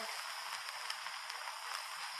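Steady hiss with a few faint crackles: the surface noise of an old archival speech recording, heard in a pause between phrases.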